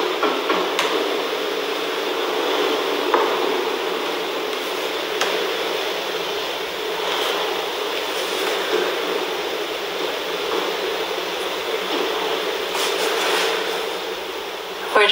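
Steady background hiss of room noise picked up by a phone microphone, with a few faint clicks.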